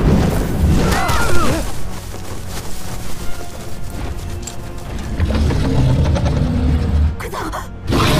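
Film soundtrack: dramatic music mixed with deep booming hits and heavy low rumbles.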